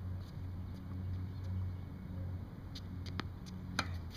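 A tennis ball struck with a racquet on a backhand near the end, a sharp pop just after a fainter click, over a steady low rumble of wind on the microphone.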